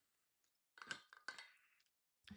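Faint sounds of a person drinking from a metal water bottle: two soft clinks, about a second in and again shortly after.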